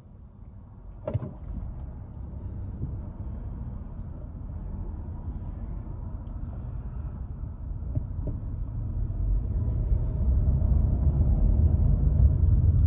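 Car engine and tyre noise heard from inside the cabin, a low rumble that grows steadily louder as the car picks up speed out of slow traffic. A sharp click about a second in.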